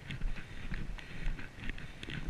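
A horse's hooves striking a paved path in a steady run of clip-clop hoofbeats, under a low rumble of wind on the camera's microphone.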